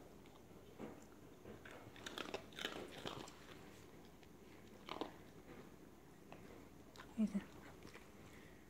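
A small dog chewing and crunching a dog treat: faint clusters of crunches, the busiest about two to three seconds in, with a few more near the middle.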